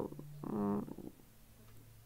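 A woman's short, low vocal grunt of disgust about half a second in, lasting under half a second. A faint steady hum runs underneath.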